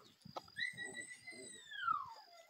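A long whistle: one note held steady for about a second, then falling in pitch, loudest as it falls near the end.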